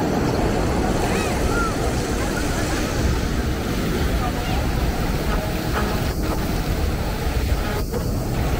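Steady splashing of ground-nozzle fountain jets falling on wet stone paving, mixed with the constant noise of city traffic and people's voices around the square.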